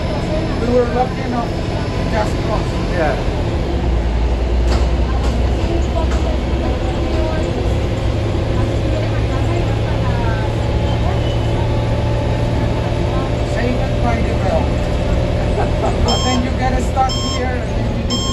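Transmilenio bus running along the busway: steady engine and road rumble heard from inside the bus. Near the end, an electronic beep starts repeating about once a second. This is the bus's overspeed warning, which beeps when the bus goes over the section's 30 km/h limit.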